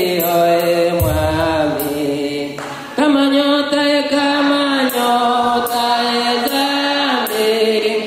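Slow church singing in long, held notes that change pitch every second or so, with a short break about three seconds in.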